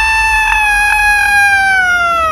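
A man's long, high-pitched shriek of mock terror, held on one note and slowly sliding down in pitch.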